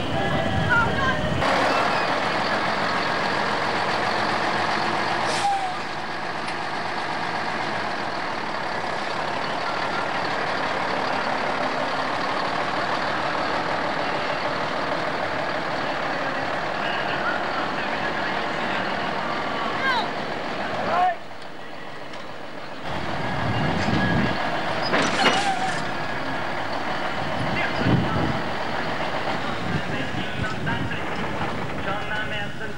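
Diesel engine of a heavy articulated truck running as it is manoeuvred, with voices in the background.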